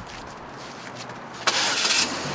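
A car's engine starting, catching suddenly about one and a half seconds in.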